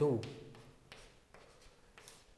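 Chalk writing on a blackboard: faint scratching with a few light taps as the chalk moves, after a man says "two" at the start.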